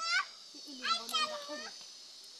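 A high-pitched voice in two short phrases, one right at the start and a longer one about half a second in, over a steady high-pitched buzz.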